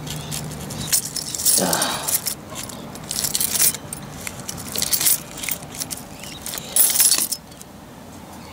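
A bunch of keys on a ring jangling and clinking in irregular bursts as one key is worked into the gap between wooden deck boards to pry out cigarette butts.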